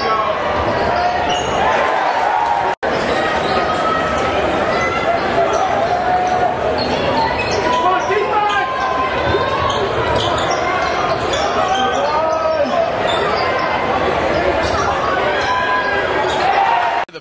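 Live game sound of a college basketball game in a large gym: a basketball bouncing on the hardwood court among a steady wash of crowd voices and short squeaking court noises. The sound cuts out for an instant about three seconds in.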